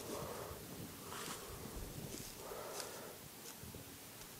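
Faint, soft rustling of cedar shavings being pressed down by hand into a beekeeping smoker's canister, swelling and fading a few times.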